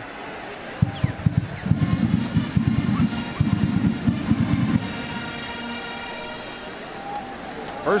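Band music heard over the stadium broadcast: rapid drum beats for about four seconds under a held chord, which thins out and fades toward the end.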